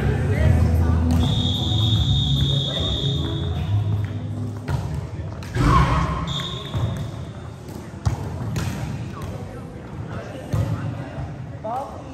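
A volleyball bouncing and thudding on a hard sport-court floor, the loudest thud about six seconds in, amid players' voices in a large hall. A steady high-pitched tone sounds for about two seconds starting a second in, and briefly again about six seconds in.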